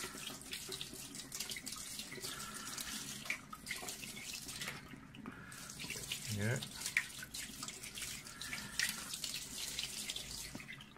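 Tap water running and splashing onto a 12-inch telescope mirror in a kitchen sink as a hand spreads the water over the glass to rinse off dust and dirt.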